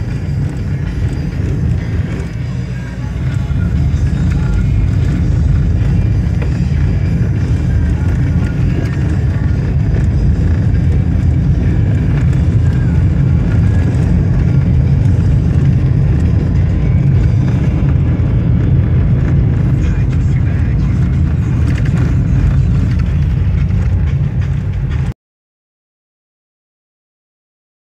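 Cabin noise of a moving Renault Logan taxi: a steady low road-and-engine rumble that grows louder about three seconds in, with music and singing playing underneath. The sound cuts off abruptly near the end.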